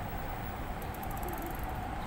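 Steady street background noise with a faint steady hum and no clear single event.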